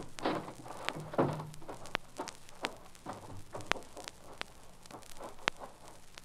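Faint, irregular clicks and crackle over a low hum and hiss: the surface noise of an old radio transcription recording.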